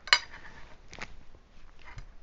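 A paintbrush knocking against a ceramic plate used as a paint palette: one sharp clink just after the start with a short ring, then a few faint taps about a second in.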